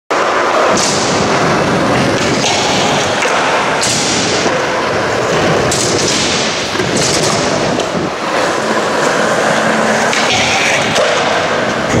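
Skateboard wheels rolling on a smooth concrete floor and wooden ramps, a loud, steady rolling noise.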